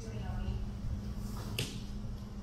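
Bare feet landing on a stack of rubber bumper plates: one sharp slap about one and a half seconds in, with faint voices in the gym.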